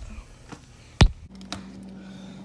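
A single loud, sharp knock about a second in, then a fainter click and a steady low hum that starts just after the knock.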